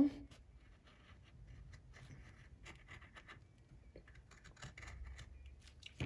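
A pencil faintly scratching on paper in short, irregular strokes as it traces around the edge of a hole in a book page.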